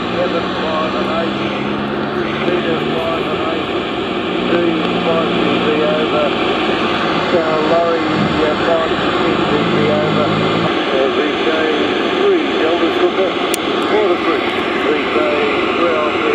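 AM receiver audio from a 160 metre transceiver's loudspeaker: loud steady hiss of band noise with a faint, unintelligible voice buried in it. A low hum comes and goes three times.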